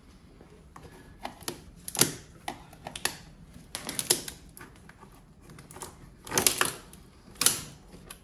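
Cardboard box being torn open by hand without a knife: irregular ripping and scraping of packing tape and cardboard, with a few louder rips spread through.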